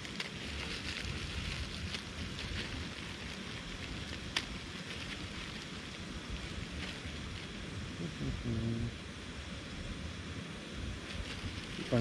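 Primus canister gas stove burner hissing steadily as a pot of water heats toward the boil, with light crinkling of a plastic packet being handled. A single sharp click about four seconds in.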